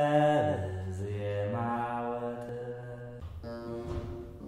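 Low chanting voice holding long, drawn-out notes: it slides down about half a second in, then moves to a new held note around a second and a half and again near the end.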